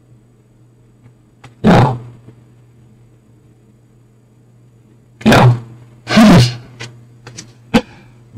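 Corrupted recording audio: a steady low hum broken by three loud, harsh bursts of noise, about two, five and six seconds in, then a few sharp clicks near the end.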